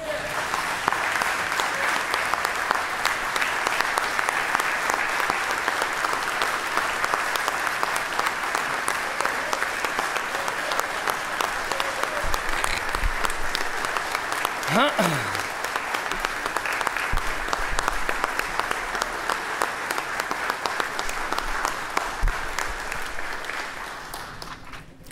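Sustained applause from a room full of people clapping steadily, thinning out near the end.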